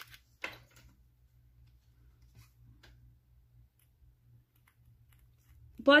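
Small tabletop handling noises: one light knock about half a second in, then a few faint clicks over a low steady hum.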